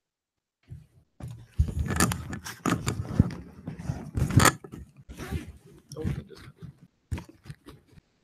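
Clip-on lavalier microphone being handled and unclipped, giving a dense run of rustles and knocks of cloth and fingers against the mic that starts about a second in.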